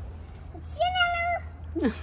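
A small dog, a Pomeranian, whining: one high, steady held note about a second in, then a short cry falling in pitch near the end.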